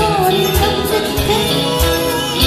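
A group of women singing a Tamil worship song in unison into microphones, over backing music with a steady beat.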